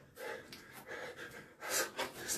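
Open hands repeatedly slapping a bare chest and face in a Subak striking drill, about three to four strikes a second, with hard, forceful breathing. The loudest strike comes near the end.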